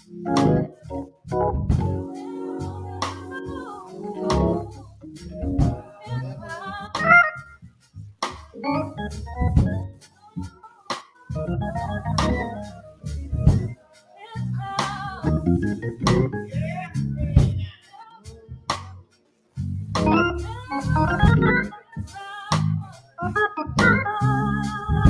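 Hammond-style church organ playing in short phrases and chords, broken by several brief pauses.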